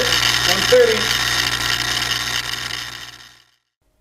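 Farnsworth fusor running under high voltage: a steady electrical buzz from the high-voltage supply and glow discharge, fading out about three seconds in.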